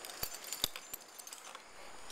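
Zip-line climbing gear clinking: three or four short, sharp metallic clicks in the first second as carabiners and rigging are handled against the steel cable.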